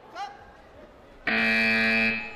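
Electronic scoreboard buzzer sounding the end of the final round of a taekwondo bout as the clock runs out: one loud, steady tone that starts a little over a second in.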